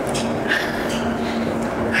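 A steady low hum, with two short, faint breathy sounds, about a tenth and half a second in.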